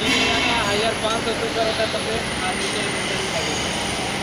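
Steady background noise of an industrial workshop, with indistinct voices mixed in.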